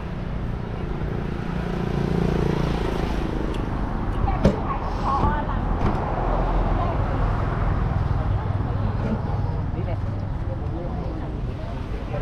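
Steady road traffic rumble from passing cars and motorbikes, with a brief snatch of a voice about four and a half seconds in.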